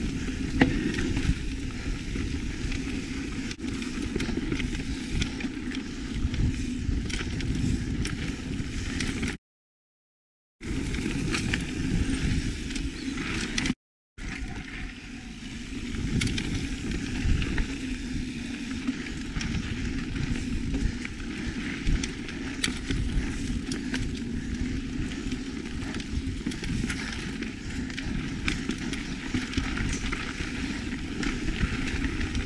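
Mountain bike rolling fast over a dirt singletrack, heard from a mic on the handlebars: a steady rumble of knobby tyres on dirt, with constant rattling and clatter from the bike over bumps. The sound cuts out completely twice near the middle, once for about a second and once very briefly.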